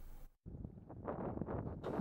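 A brief drop to silence, then faint outdoor wind noise on the microphone that grows slightly louder toward the end.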